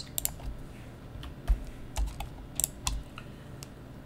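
Computer keyboard keys clicking as someone types, irregular keystrokes a few a second with short pauses between them.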